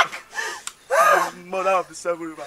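A person's voice giving several short gasps and cries without clear words, the loudest about a second in.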